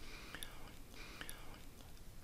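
Faint breath and two small mouth clicks from a voice-over narrator, about a second apart, between sentences.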